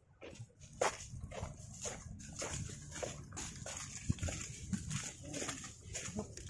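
Footsteps crunching on a dry dirt path strewn with dead leaves and twigs, several people walking, in an irregular run of short crunches. A steady high-pitched buzz runs behind them.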